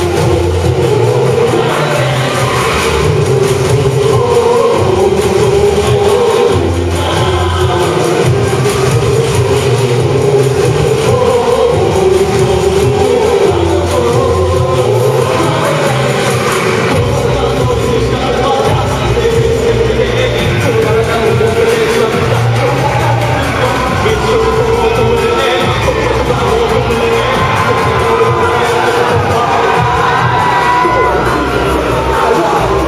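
A rock band playing live, loud and continuous, with the deep bass filling in about 17 seconds in.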